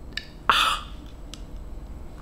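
A short breathy vocal sound, like a quick gasp, about half a second in, with a couple of faint clicks from handling a small handheld gimbal camera.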